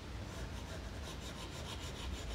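Apple Pencil tip rubbing on an iPad's glass screen in quick, repeated back-and-forth shading strokes: a faint, scratchy rub.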